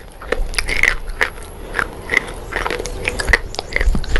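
Close-miked crunching of dry chalk sticks being bitten and chewed, with a sharp crack about twice a second.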